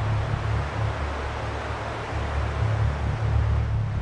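Outdoor beach ambience: wind rumbling and buffeting on the microphone over a steady hiss of sea and breeze.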